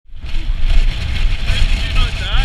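Loud wind buffeting an action camera's microphone: a steady, deep rumble with a hiss over it. A voice is faintly heard under it near the end.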